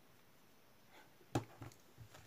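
Faint room tone broken, about one and a half seconds in, by one sharp click and a few softer taps: hands handling a crochet hook and yarn while making a starting loop.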